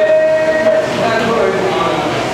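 A person's long drawn-out vocal call, rising into one steady pitch and held for over a second before breaking off, over voices in the room.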